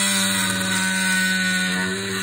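Power drill running steadily with a constant motor hum, its bit boring into a wooden board.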